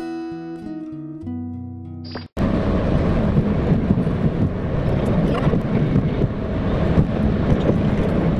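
A short instrumental music sting with held notes ends abruptly a little over two seconds in. It gives way to the steady rumble of road and engine noise inside a car's cabin while driving on a highway.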